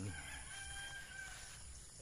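A rooster crowing faintly, one drawn-out call lasting about a second and a half.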